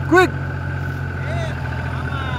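Small farm vehicle's engine running steadily, an even low hum with no revving.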